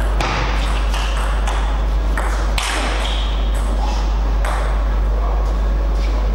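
Table tennis rally: the ball clicks sharply off bats and table in quick alternation, a hit every third to half second, until the rally ends about five seconds in. A steady low hum runs underneath.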